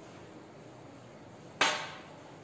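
A single sharp clink about a second and a half in, with a brief ringing decay: a small measuring container set down against the glass tabletop.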